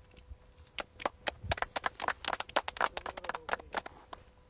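A small group of people clapping: separate, irregular hand claps that start about a second in and stop just before the end.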